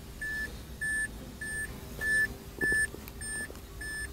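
An electronic warning beeper sounding short beeps at one steady pitch, repeating evenly about every 0.6 s, with a few faint clicks just past the middle.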